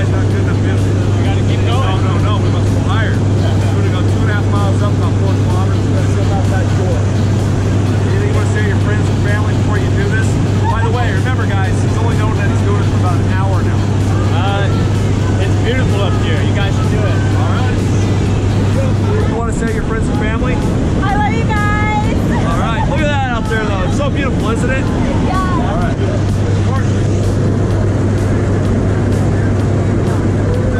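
Loud steady drone of a small jump plane's engine and propeller heard inside the cabin during the climb, with voices shouting over it. Its low hum breaks off about two-thirds of the way through and comes back near the end.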